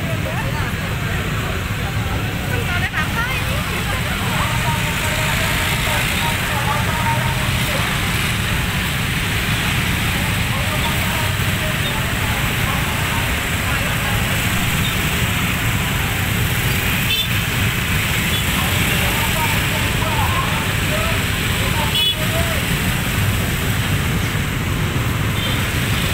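Traffic jam of motorbikes and scooters: many small engines idling and creeping forward as a steady low rumble, with people's voices in the background and a couple of brief clicks.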